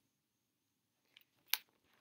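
Near silence: room tone, broken by a faint tick just after a second in and a short, sharp click about one and a half seconds in.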